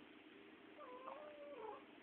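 Domestic cat giving one faint call, about a second long, mostly level in pitch and dropping away at the end.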